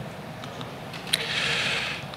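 A pause in speech. About a second in there is a single sharp click, followed by a brief soft rustle.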